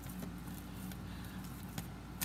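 Quiet room tone: a low steady hum with a couple of faint clicks, one near the end.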